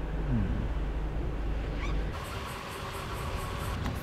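A car engine idles with a low, steady rumble inside the car, and the rumble cuts off about halfway through. After that there is quieter background with a faint steady whine and a quick, faint high pulsing.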